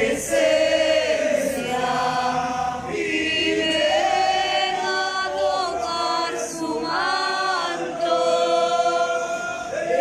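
Church congregation singing together in chorus, with long held notes in phrases of a second or two.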